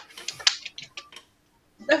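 Small group applause from two or three people, a quick run of thin claps that dies away after about a second.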